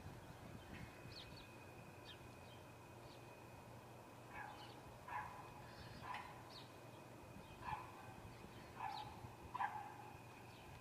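A dog barking faintly, about six single barks at uneven intervals starting about four seconds in.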